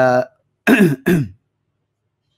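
A man clearing his throat twice in quick succession, each one short and falling in pitch, in a pause in his recitation.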